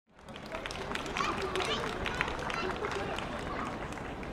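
Faint, indistinct talk and chatter from the audience, with a few light clicks and knocks.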